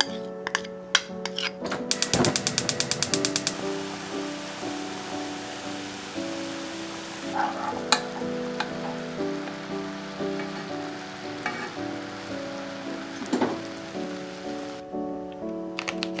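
Orange juice, honey and soy sauce simmering in a frying pan as the sauce reduces: a steady bubbling hiss under background music. A quick run of clicks comes about two seconds in, and the hiss stops shortly before the end.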